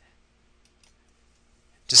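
A few faint, sharp clicks of a computer mouse advancing a slideshow, over near quiet. Near the end a man starts speaking.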